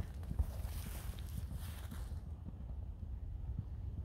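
Soft, muffled hoofbeats of a horse moving at speed on a sand track, fading as it moves away, over a steady low rumble.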